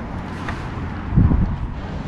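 Wind buffeting an outdoor camera microphone, a low rumble with a stronger gust a little past a second in.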